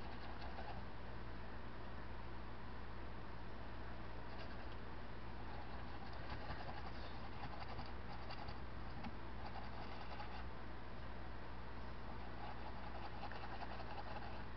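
A small paintbrush dabbing and scratching faintly on a canvas over a steady low hum.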